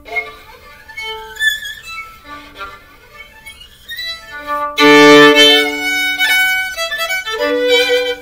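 Solo acoustic violin bowed in a slow run of held notes, soft at first and much louder from about five seconds in. The player hears the tone as no longer harsh or shrill, putting it down to excess rosin wearing off the bow.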